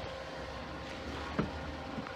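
Buick LaCrosse V6 idling steadily, heard from beside the car, with a single sharp click a little past halfway.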